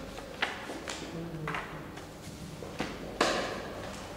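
Marker pen drawing on a whiteboard: several short, sharp strokes and taps with faint squeaks, the loudest about three seconds in.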